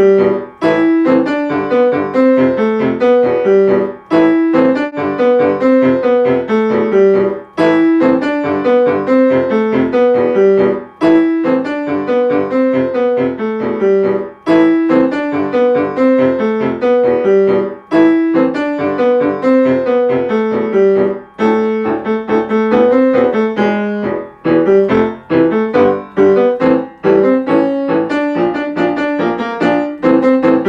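Solo piano playing an easy arrangement of an anime theme tune, with steady repeated notes in the middle register and a melody above, in phrases broken by short pauses every few seconds.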